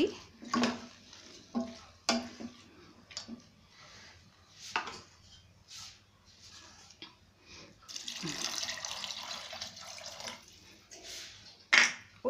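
A spoon knocking and scraping in a pressure cooker as dal and spinach are stirred, a few separate knocks over several seconds. About eight seconds in, water is poured into the pot: a steady splashing rush lasting about three seconds.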